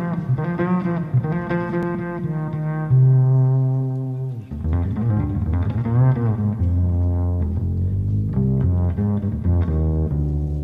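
Background instrumental music led by low bowed strings, double bass or cello, with notes changing about every second.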